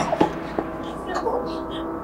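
Gunfire: sharp shots, with a loud report just before and a couple more in the first half-second, followed by a steady ringing tone.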